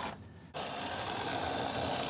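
Tri-ang Hornby Class 35 Hymek 00-scale model diesel locomotive running along the track, its small electric motor and gears whirring steadily. The whir starts about half a second in.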